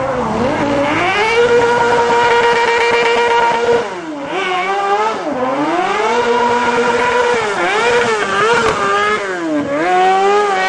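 Small engine of a modified Piaggio Ape three-wheeler revving hard, held high and steady, with two sharp lift-offs about four and five seconds in, then climbing again and rising and falling quickly as the driver blips the throttle through the drift.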